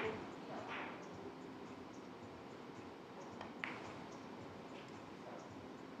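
Three-cushion carom billiards shot: a sharp click of the cue tip striking the cue ball at the start, then a single sharp click of balls meeting about three and a half seconds later, over faint arena hush.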